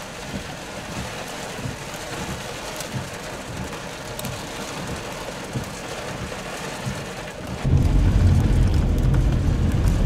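Rain and storm wind on a car, a steady rushing noise. About three-quarters of the way through it suddenly gets much louder, with a heavy low noise added.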